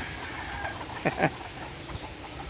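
Chickens and roosters calling in a farmyard: a faint, drawn-out call fades out in the first part, and there are two quick, sharp sounds about a second in.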